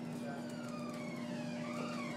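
Faint siren wailing, its pitch slowly falling and then rising again, over a steady low room hum.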